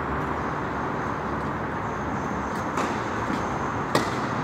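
Steady background noise with two sharp knocks near the end, about a second apart, the second louder: a tennis ball being struck with a racket on a clay court.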